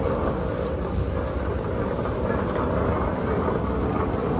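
Airport moving walkway running with a steady low rumble, mixed with the hum of a large terminal hall.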